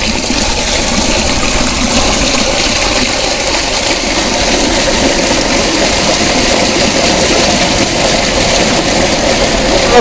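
Water gushing steadily out of a wide PVC outlet pipe and splashing into a concrete drain channel as a bottom-clean fish tank is drained from the bottom.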